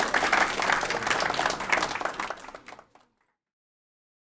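A class audience applauding, the clapping thinning out and stopping about three seconds in.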